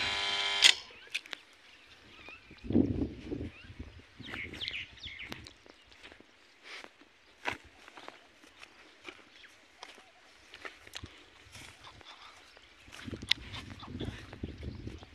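Electric pump motor at a farm well humming steadily, then switched off with a click under a second in. After that, footsteps on dry grass and gravel with scattered light clicks.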